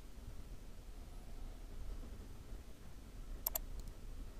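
Quiet room tone with a low hum, broken by two computer mouse clicks in quick succession about three and a half seconds in.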